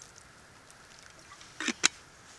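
Water poured from a plastic bottle into a shallow metal tray around a gas canister, faint, with two short sharp clicks near the end.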